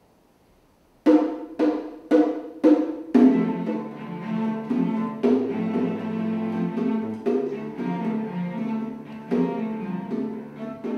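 A cello quartet begins a tango: after a second of quiet, five sharp accented chords about half a second apart, then a sustained bowed passage with rhythmic accents.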